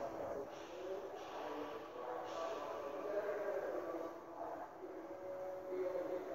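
Faint background music, a run of held notes at low level with no clear beat.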